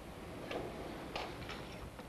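A few faint, short taps of a cabled barcode pen being touched to the barcodes of a clipboard sheet, over low background noise.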